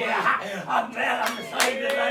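Men's voices calling out loudly and fervently in the manner of revival preaching and congregational response, with a few sharp hand claps in the second half.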